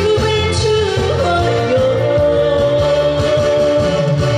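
A woman singing a pop song live into a handheld microphone over instrumental accompaniment, holding one long note through the second half.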